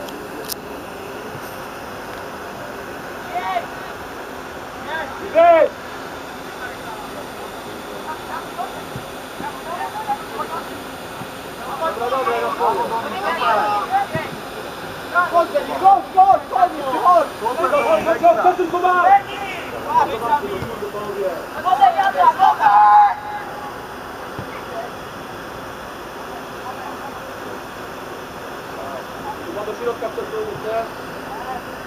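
Shouted calls from players and coaches on a football pitch over a steady background rush. There is one loud short shout about five seconds in, and a busy stretch of calling from about twelve to twenty-three seconds in.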